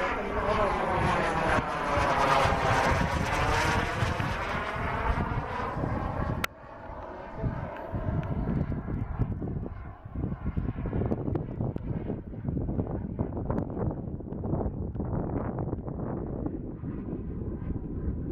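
Model jet turbine of a radio-controlled BAe Hawk flying past: its whine swells to a peak about two and a half seconds in and falls away. After a sudden break about six and a half seconds in, it is only faint under a fluctuating rush of wind on the microphone.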